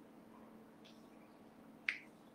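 Near silence with a faint steady hum, broken near the end by a single short, sharp click.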